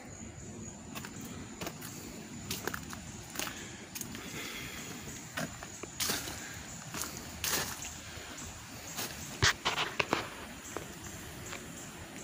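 Footsteps on leaf litter and twigs, irregular steps with a cluster of sharper clicks about nine to ten seconds in.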